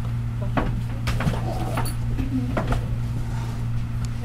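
Small sewing-machine attachments being handled while a binder foot is fetched: a few scattered clicks and light knocks, like a drawer or box being opened and small parts picked up. A steady low hum runs underneath.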